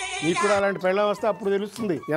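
A person's voice with quickly wavering, bending pitch, after a brief noisy, hissing sound in the first half second.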